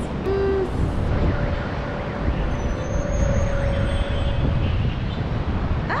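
Steady low rumble of city traffic from the streets far below, with a faint steady tone in the middle of it.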